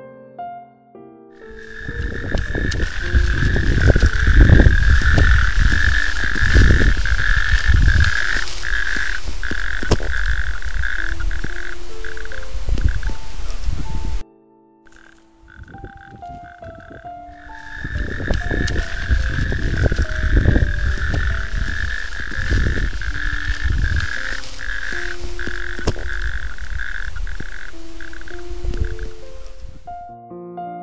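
A loud, dense chorus of calling frogs in two stretches. It cuts off suddenly about fourteen seconds in and starts again a few seconds later, with soft piano music underneath.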